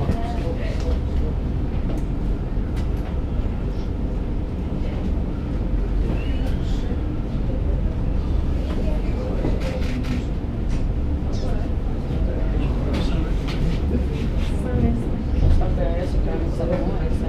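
Steady low rumble inside a London Eye passenger capsule, with faint voices and a few small clicks.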